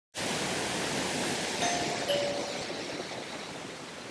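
Steady hiss of rain that grows quieter, with a two-note doorbell chime about one and a half seconds in: a higher ding, then a lower dong.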